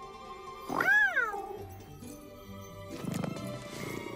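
An animated cat's single meow about a second in, rising then falling in pitch, over soft background music. A low rumble follows a few seconds in.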